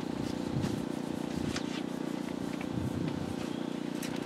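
A steady low hum throughout, with a few faint light clicks.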